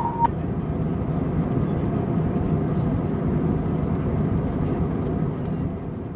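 Steady low rumble of airliner cabin noise in flight, with faint scattered crackles. It fades away near the end. A held musical note cuts off just after the start.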